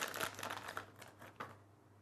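Clear plastic packaging bag crinkling as a small part is unwrapped from it by hand: a quick run of crackles that thins out after about a second and stops.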